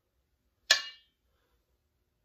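A single sharp metallic clink that rings briefly, as the marinade injector knocks against the stainless steel bowl of raw turkey necks.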